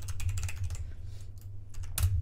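Typing on a computer keyboard: a quick run of keystrokes in the first second, then a few more, with one louder keystroke near the end.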